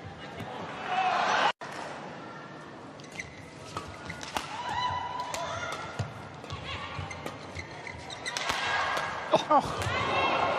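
Badminton rally: rackets striking the shuttlecock with sharp, irregular cracks, and players' shoes squeaking on the court mat. A swell of crowd noise comes about a second in and cuts off abruptly.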